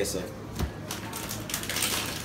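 A few light clicks and taps over a low steady hum.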